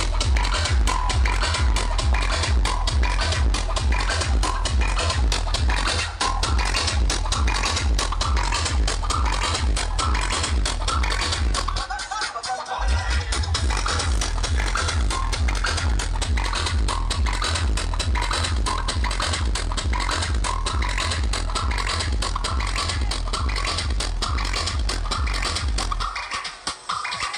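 Electronic dance music played very loud through a large street DJ sound system, with a fast, heavy bass beat. The bass cuts out for about a second midway, then kicks back in.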